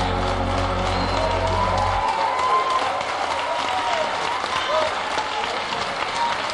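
End of a live gospel music recording. A held closing chord with bass stops about two seconds in, leaving an audience applauding, with faint voices in the crowd.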